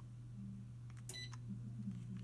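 Touchstone 80001 Onyx electric fireplace giving one short, high beep about a second in as it takes the remote's heater-on command, over a steady low hum.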